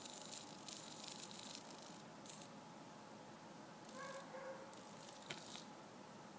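Small hobby micro servo faintly buzzing and chattering as its output arm is forced by hand, with a short motor whine about four seconds in. The servo jitters instead of holding its position, which the owner suspects comes from running it on a 6.1-volt pack, above its rated voltage.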